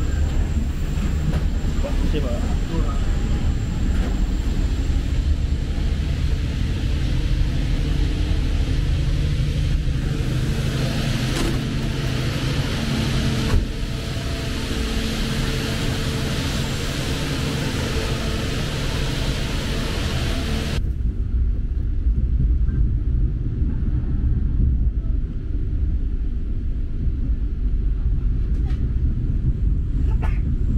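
Inside a moving passenger train: the steady low rumble of the coach running on the rails. About two-thirds of the way through, the higher hissing part of the noise cuts off suddenly, leaving mainly the low rumble.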